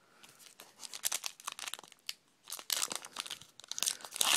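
A foil trading-card pack wrapper crinkling in irregular crackly bursts as it is handled and torn open, loudest about a second in and again near three seconds.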